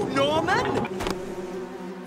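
A voice cries out, rising in pitch. About a second in it gives way to the steady hum of a small fishing boat's engine.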